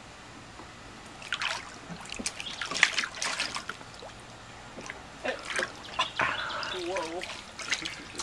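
A baby's hands splashing and slapping the water of a shallow plastic kiddie pool, in two spells of quick splashes, the first about a second in and the second around five seconds in.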